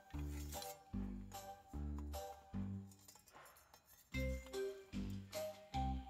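Background music with a steady beat: a low note about every 0.8 seconds under a higher melody.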